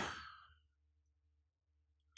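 A man's voice trailing off in a soft, breathy exhale in the first half-second, then near silence with a faint steady hum of room tone.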